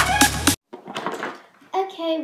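Electronic background music with a quick steady beat that cuts off abruptly about half a second in, followed by a moment of near quiet with a few faint handling noises, then a woman's voice starting to speak near the end.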